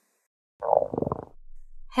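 Cartoon stomach-growl sound effect, the sign of hunger: it starts about half a second in, is strongest for under a second, then trails off more quietly.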